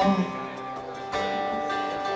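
Live acoustic band playing between sung lines: strummed acoustic guitar chords ring over upright bass, with a new chord coming in about a second in.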